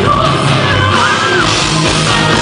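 Symphonic metal band playing live with distorted electric guitars and drums, and a voice yelling over the music. It is recorded from the crowd, loud and dense.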